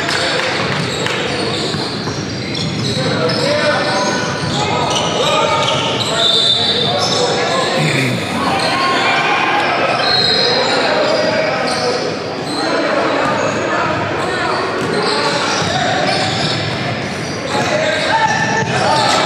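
Basketball dribbling on a hardwood gym floor during a game, with indistinct shouts and chatter from players and spectators and brief high squeaks, all echoing in a large hall.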